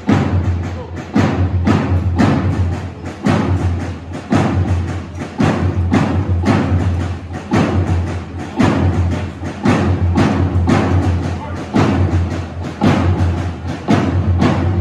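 Marching drums beating a steady drill cadence, with regular louder accented strokes.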